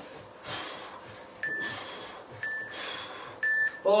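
Interval timer app sounding its end-of-interval countdown: three short, identical high beeps about a second apart, the last one loudest. Under them, hard breathing from the exercise rises and falls.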